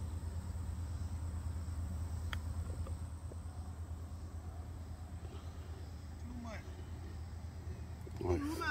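A single sharp click about two seconds in: a golf club strikes the ball on a short shot from just off the green. A steady low rumble runs underneath, and faint voices follow a few seconds later.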